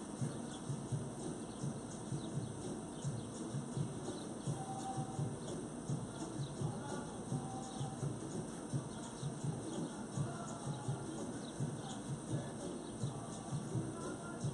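Faint outdoor backyard ambience: small birds chirping, over a low, irregular run of soft knocks several times a second.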